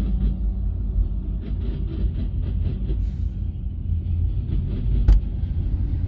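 Double-stack intermodal well cars of a freight train rolling slowly past: a steady low rumble with runs of light, quick rhythmic clicks and one sharp clack about five seconds in.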